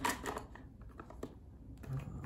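Light plastic clicks and knocks from a reusable mesh filter being set into the brew basket of a Mr. Coffee coffee maker and its hinged lid being handled. The sharpest knock comes right at the start, with a few smaller clicks after it.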